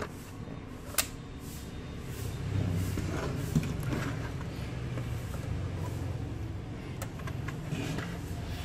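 A sharp plastic click as a Dell laptop battery is pushed home and latches into its bay, followed by knocking and rubbing as the laptop is turned over on the table and its lid opened, with another click near the end.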